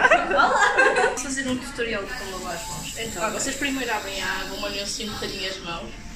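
People talking and chuckling, the voices fading near the end.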